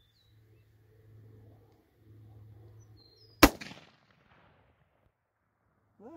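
A single shot from a Mossberg Patriot bolt-action rifle in .270 Winchester, about three and a half seconds in, with a short echo trailing off.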